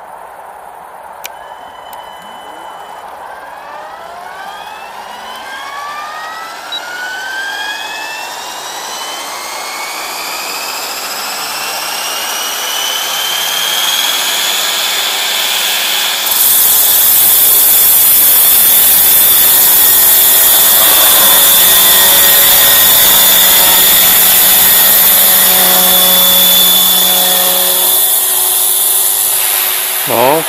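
Radio-controlled model helicopter spooling up on the ground: a whine that rises steadily in pitch for about fifteen seconds, then about halfway through the sound abruptly turns much louder and stays steady as the helicopter takes off and climbs.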